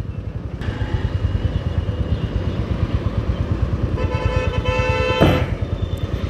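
Royal Enfield Classic 350's single-cylinder engine running under way with a steady low, fast thumping. About four seconds in, a vehicle horn sounds for just over a second.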